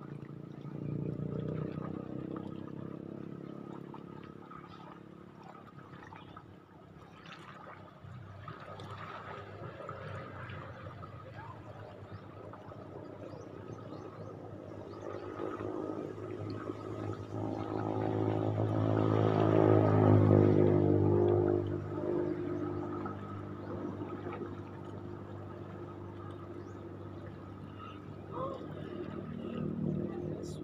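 A boat's engine running steadily, growing louder to a peak about two-thirds of the way through and then easing off.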